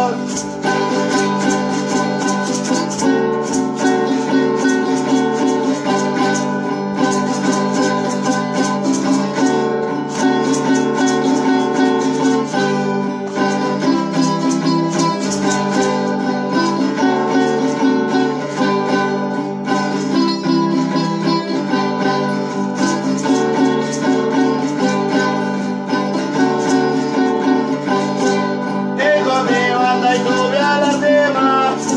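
A concha or similar small-bodied plucked-string instrument strummed rapidly in a steady rhythm, playing an instrumental passage. A voice starts singing again near the end.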